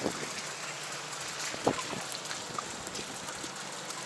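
Steady rain falling, an even hiss of drops on wet paving and puddles. A single short sound stands out a little under halfway through.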